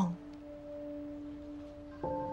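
Quiet background score: a single soft note held steady, like a sustained synth drone.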